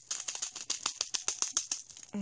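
Black 2 mm star glitter shaken out of a small plastic bag into a plastic jar of glitter: a fast, irregular run of dry rattling ticks, about ten a second.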